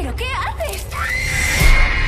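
A girl crying out in pain in quavering, high-pitched cries, then a rising cry held on one high note. A deep low boom lands near the end.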